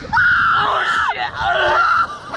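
Two young men screaming in fright on a slingshot thrill ride as the capsule flips over: long, loud, high-pitched screams with a brief break about halfway through.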